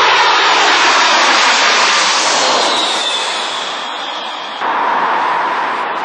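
Jet aircraft engine noise, loud and steady, with a faint falling whine about halfway through; it starts abruptly and steps up again near the end.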